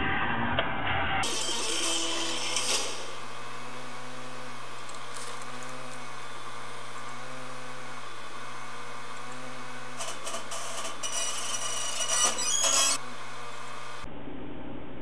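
The in-dash DVD head unit's disc drive whirs steadily with a low hum while it reads a DVD fast-forwarding at high speed. Short bursts of whirring and clicking come a couple of seconds in and again near the end, as the drive seeks. A moment of background music is heard at the very start.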